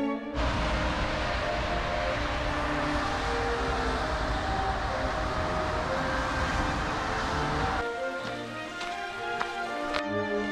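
Steady hiss of motorway traffic on a wet road, tyres swishing over the surface, laid over orchestral piano concerto music; it starts abruptly just after the start and cuts off about eight seconds in, leaving the music alone.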